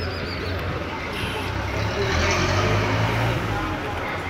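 Street sound: a motor vehicle's engine running with a steady low hum that grows louder in the middle and eases off near the end, with people talking around it.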